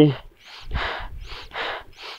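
A climber breathing hard through an oxygen mask at extreme altitude: quick, heavy breaths, about two a second.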